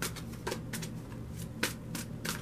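A deck of tarot cards being shuffled by hand: a few sharp, irregular clicks as packets of cards strike the deck, the loudest about three-quarters of the way through.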